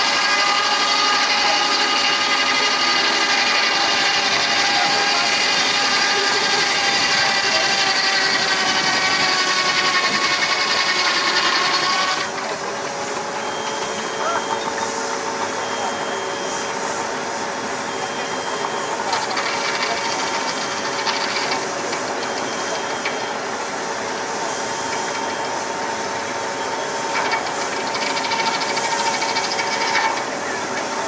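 Steam traction engine belt-driving a saw bench. The blade whines through a log, its pitch sagging slowly under load, then about twelve seconds in the sound drops abruptly to a quieter, steadier hum and steam hiss.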